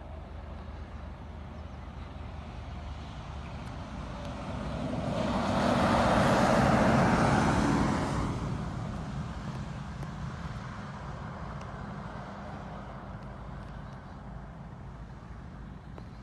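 A steady low engine hum, like a car idling, runs throughout. In the middle a passing road vehicle swells up over a few seconds and fades away again.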